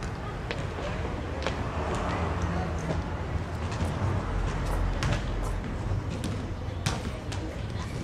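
Steady outdoor background noise with indistinct distant voices and a few scattered short knocks.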